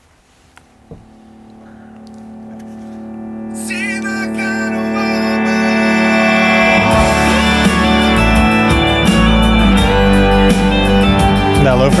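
A country song played over Klipsch Forte IV loudspeakers in a small room. It fades in from near silence on a held note, a fiddle line with vibrato enters about four seconds in, and bass, guitar and drums come in around seven seconds, after which the music plays at full level.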